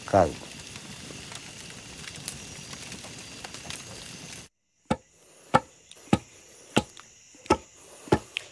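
Leaf-and-branch fire burning with a steady hiss and occasional small crackles. After an abrupt cut, a long wooden pestle thuds down into a mortar in a regular rhythm, about three strokes every two seconds, pounding coca leaves to make mambe.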